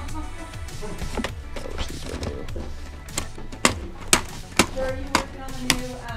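Plastic cassette tape cases clacking against each other as a hand flips through a box of tapes: about five sharp clacks, roughly half a second apart, in the second half. Background music and voices run underneath.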